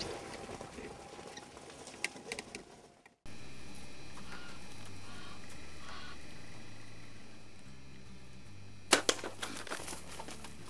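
A steady low background hum, broken about nine seconds in by a quick cluster of sharp snaps and knocks: a bow shot, the bowstring's release and the arrow striking a blue wildebeest, which bolts.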